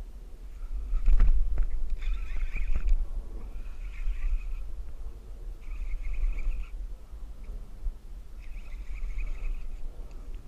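Fishing reel buzzing in four short bursts of about a second each while a hooked bass fights on the line. Under it is a steady low rumble of wind on the microphone, with a sharp knock about a second in.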